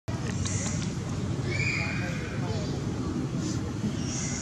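Short, high-pitched animal calls over a steady low outdoor rumble, the clearest a held squeal-like call about a second and a half in.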